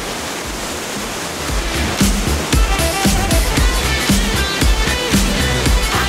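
Steady rushing of the Gollinger waterfall's water. About two seconds in, upbeat funk background music with a strong regular beat comes in over it.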